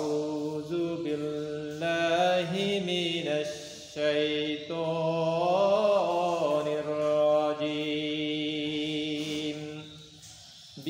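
A solo man's voice chanting Qur'an recitation in Arabic, in the melodic tilawah style with long drawn-out notes, opening with the ta'awwudh. He breathes briefly between phrases, about two and four seconds in.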